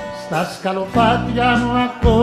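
Greek laïkó band playing an instrumental passage: a lead melody with wide vibrato over plucked strings and a steady bass line, which pauses briefly about a second in.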